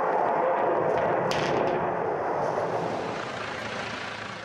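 Rocket motor of a launched missile: a steady rushing noise that slowly fades as the missile climbs away.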